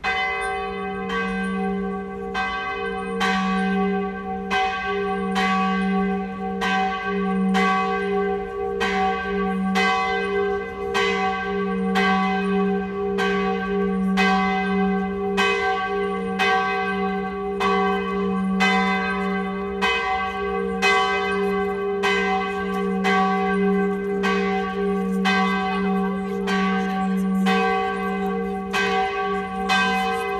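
Swinging peal (volée) of a large church bell tuned to low G, its clapper striking a little more than once a second over a steady, sustained hum. It still rings very violently despite a slightly reduced swing angle, and its clapper is worn.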